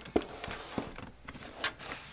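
Handling noise from cardboard boxes of plastic makeup compacts as one box is put down and another picked up: a few sharp knocks and clatters with rustling between them.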